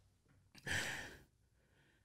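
A man sighs once: a short, breathy exhale of about half a second, close to the microphone.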